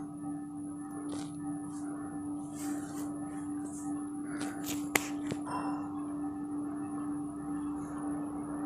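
A metal spoon scraping and clinking against a ceramic bowl as curd is spread around it: a few soft scrapes and one sharp clink about five seconds in, over a steady low hum.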